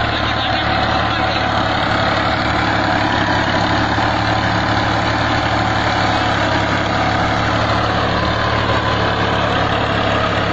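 Fiat 480 tractor's three-cylinder diesel engine running steadily under load as it tows a spiked roller harrow through loose soil.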